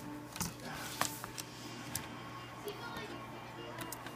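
Light plastic clicks and handling sounds as a laptop keyboard and its ribbon-cable connector tabs are worked by hand: a handful of separate small clicks in the first two seconds, over a steady low hum.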